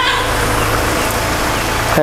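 Steady low machine hum under an even wash of noise, running without change.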